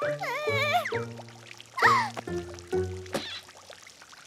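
Cartoon music, a run of short notes that step in pitch, with squeaky wordless character vocalisations that glide up and down in the first second and sweep downward about two seconds in.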